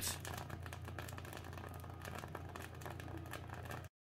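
Faint crackling of cloves burning on a wire rack, many small irregular pops over a low steady hum. The sound cuts off near the end.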